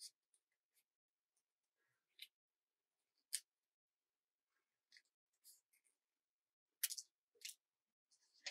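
Small scissors snipping green craft paper: a few faint, short snips spaced out, then a quick run of snips near the end.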